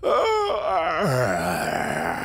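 A man's loud, drawn-out yawn voiced as a groan on waking, starting suddenly, its pitch sliding down over the first second and then carrying on as a breathy sustained exhale.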